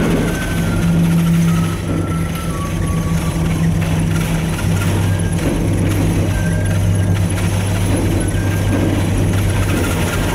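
Steady low hum and rumble of an aerial cable car cabin travelling down its cables, with a few faint short high whines over it.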